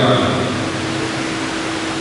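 Steady hiss of background room noise with a faint, steady hum running under it. The tail of a man's voice ends just as it begins.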